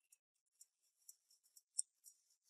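Near silence with faint, crisp ticks of a fork cutting into a slice of chocolate mousse cake, and one sharper tick near the end.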